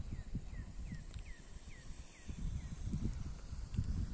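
A bird calling a quick run of short, falling whistled notes, about three a second, which stops a little over halfway through. Under it, low, uneven rumbling of wind buffeting the microphone.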